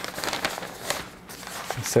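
A sheet of paper rustling and crinkling as it is rolled up around a rolling pin, with a few light crackles, fading after about a second and a half.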